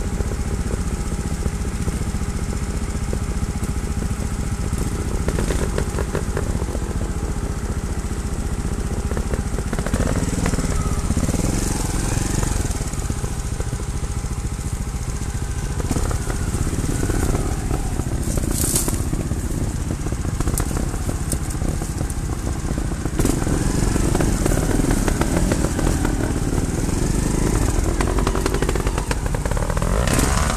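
Trials motorcycle engines running at low revs, the throttle opening and closing at intervals so the engine note rises and falls, with more throttle from about two-thirds of the way in.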